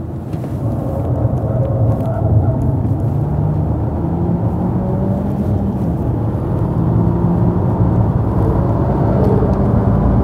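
Car engine and road noise heard from inside the cabin while driving, the engine note rising and falling with speed.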